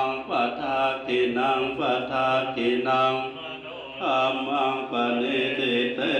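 Thai Buddhist monks chanting Pali blessing verses together in a continuous recitation, softer for a moment just past the middle.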